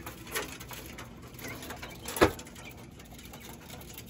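Quail giving two short, sharp calls, a faint one near the start and a louder one about two seconds in, over a low background.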